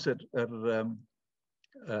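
A man speaking, with a brief pause about a second in before he carries on.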